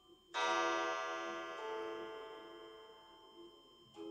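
A bell-like musical note struck about a third of a second in, ringing out and slowly fading, with a second note joining about halfway through.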